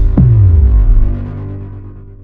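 Electronic logo sting: a tone that falls steeply into a deep bass drone, then fades away.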